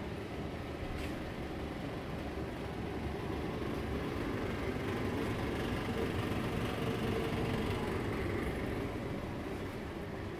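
Steady low rumbling noise, swelling a little in the middle, with one faint click about a second in.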